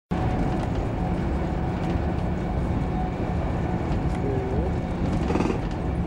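Steady low rumble of a moving passenger train heard from inside the carriage, with faint voices.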